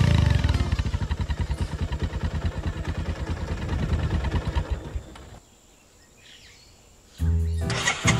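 Motorcycle engine running with an even low beat, about six a second, then cut off suddenly about five seconds in. Music comes back in near the end.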